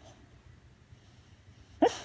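A sleeping dog gives a single sudden, short, sharp sound near the end, a quick rising cry or hiccup, over its faint breathing.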